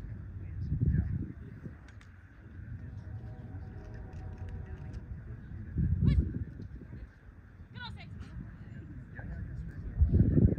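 Wind buffeting the microphone in low rumbling gusts, strongest about a second in and again around six seconds. In between there are faint distant honking calls, a few of them sliding down in pitch.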